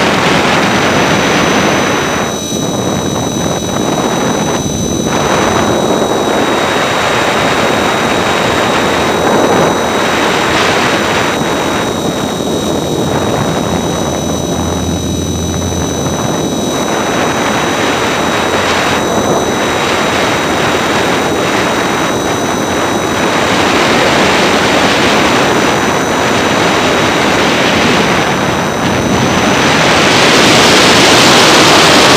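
E-flite Blade 400 electric RC helicopter in flight, heard from a camera on board: loud, steady rush of rotor wash with a thin high whine from the electric motor and gears that shifts slightly in pitch now and then.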